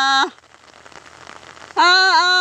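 A held sung note of a Karam folk song breaks off about a quarter second in, leaving a faint, even hiss for about a second and a half before the singing comes back near the end.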